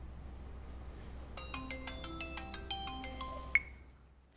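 Light background music played on mallet percussion such as marimba or glockenspiel, in stepped runs of struck notes. It thins out for about a second, picks up again, then fades near the end, with a single sharp click just before it dies away.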